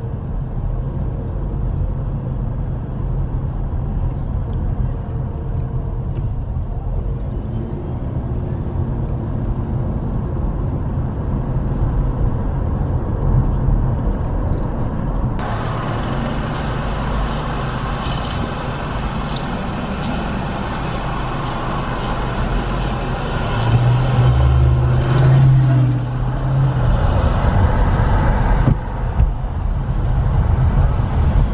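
Car driving, heard from inside the cabin: steady low road and engine rumble. About halfway through, the sound suddenly turns brighter and hissier as other traffic passes, and near the end a louder low drone swells for a couple of seconds.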